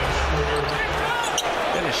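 Basketball arena sound after a made jump shot: crowd noise and a commentator's voice, with court sounds under it.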